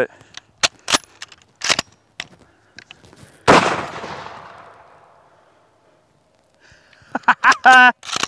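Bolt of a cut-down Mosin-Nagant worked with a few sharp metallic clicks, then a single loud 7.62×54R rifle shot about three and a half seconds in, its report echoing and dying away over about two seconds. A man laughs near the end.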